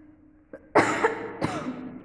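A woman coughs twice in quick succession, starting a little under a second in.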